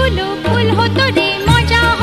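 Background music: a melody with bending, ornamented notes over a bass line that moves every half second or so.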